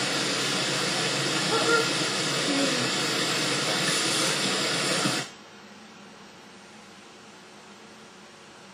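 Steady rushing hiss of outdoor background noise on a camcorder's microphone, with brief faint girls' voices. It cuts off abruptly about five seconds in, leaving a much quieter electronic hiss.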